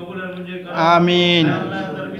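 Men's voices chanting an Arabic prayer of supplication (dua), answered with drawn-out 'amin'. One louder, held phrase comes about a second in over a lower, steady voice.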